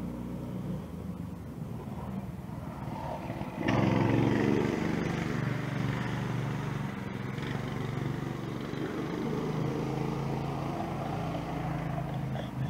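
An engine running steadily, with a low hum; it turns suddenly louder and fuller about four seconds in and stays so.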